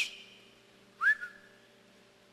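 A single short whistle-like tone about a second in, gliding up and then back down, in an otherwise quiet pause with a faint steady hum.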